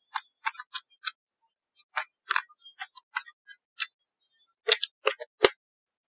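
A string of short, irregular light clicks and taps with silence between them; near the end comes the loudest, a sharper knock.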